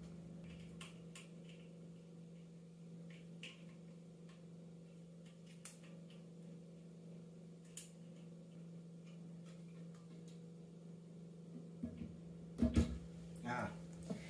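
Light scattered clicks and a few louder knocks near the end from a plastic toilet seat being handled and lifted, over a steady low hum.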